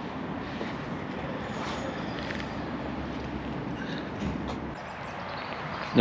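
A passing vehicle: a steady noise of engine and road that eases off about three-quarters of the way through.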